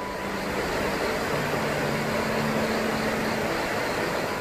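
Rushing river water running over shallow rapids, a loud steady wash of noise, with soft background music faintly underneath.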